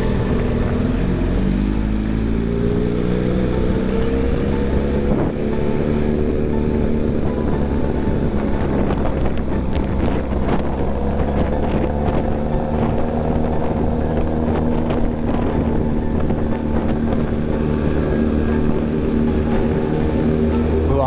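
Motorcycle engine pulling up through the revs over the first few seconds, then running at a steady speed while riding.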